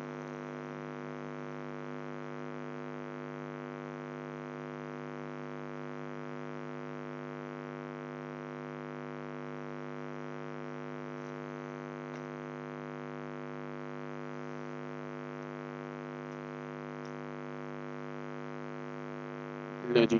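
Steady electrical hum, a stack of many evenly spaced tones that holds unchanged throughout, with a few faint ticks.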